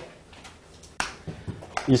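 Chalk tapping and scraping on a blackboard while writing: one sharp tap about a second in, then a few fainter taps.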